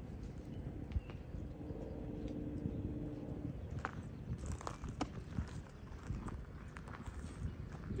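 Quiet outdoor ambience with a few light, scattered taps and scuffs of shoes on a granite boulder, and a faint low hum from about one and a half to three and a half seconds in.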